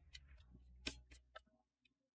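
Near silence with a few faint, sharp clicks in the first second and a half, then the sound cuts to dead silence.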